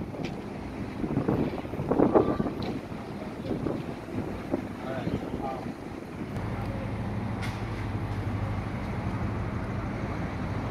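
Outdoor street sound: indistinct voices for about the first six seconds, then a steady low rumble with wind on the microphone.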